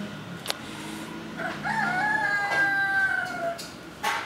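A rooster crowing once: one long call of about two seconds, starting about one and a half seconds in, rising briefly, then held and trailing off. A single sharp click about half a second in.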